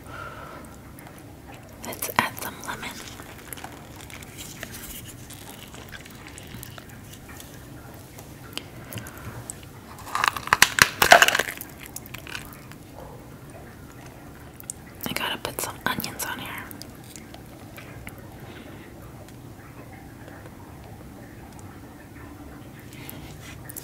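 Sauce-covered lobster tail being pulled apart by hand: wet squishing and cracking of shell in three short spells, the loudest about ten seconds in.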